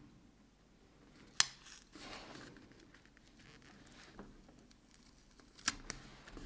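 Metal tweezers clicking and paper rustling as a sticker is peeled back up off a planner page. There is one sharp click about a second and a half in and another near the end, with light rustling between them.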